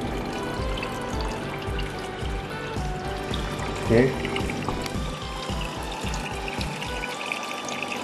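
Water pouring and trickling steadily through an aquarium's internal back filter, under background music with a low beat that stops near the end.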